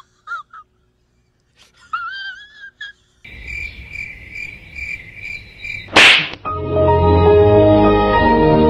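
Edited meme audio. After a near-silent start and a brief gliding pitched sound, a steady hiss carries a high chirping tone pulsing two to three times a second. A single sharp smack comes about six seconds in, then music with sustained chords.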